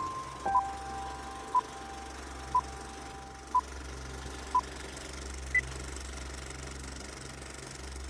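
Film-leader countdown sound effect: a short beep once a second, five times, then a single higher-pitched beep about five and a half seconds in, over a steady low hum.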